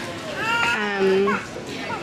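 Speech only: a woman's voice, with one drawn-out syllable in the middle.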